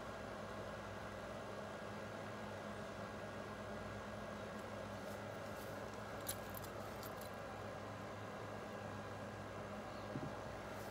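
Faint, steady background hum and hiss with a few light clicks about five to seven seconds in.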